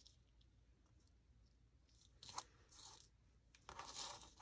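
Near silence, then a few faint crinkles of paper being handled and pressed down, starting about two seconds in.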